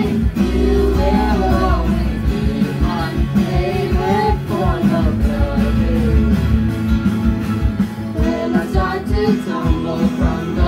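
Strummed acoustic guitar accompanying a group of young voices singing a pop-rock song together.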